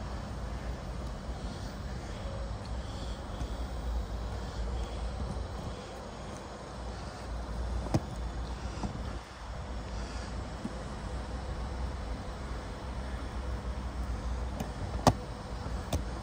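Steady low outdoor rumble with two sharp clicks, one about halfway through and a louder one near the end.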